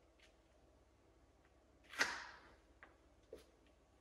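A single sharp knock or slap about halfway through, trailing off briefly in a hard-floored room, followed by two faint ticks.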